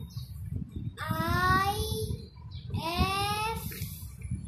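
A young boy's voice chanting in a drawn-out sing-song: two long notes, each rising in pitch, about a second in and again near the end, as he spells out number names letter by letter.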